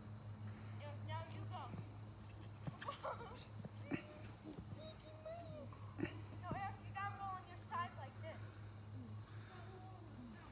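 Faint, distant children's voices calling and shouting now and then, over a steady low hum.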